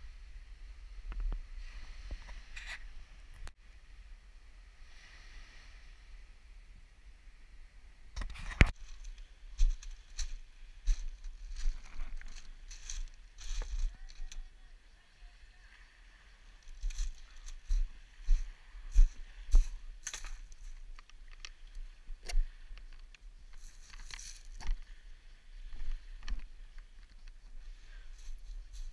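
Footsteps crunching over a pebble beach, a run of sharp irregular crunches starting about a third of the way in, with a pause just past the middle, over a low rumble of wind and handling on the microphone.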